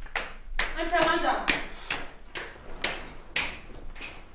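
Footsteps climbing a staircase, sharp steps about two a second, with a brief voice sounding about a second in.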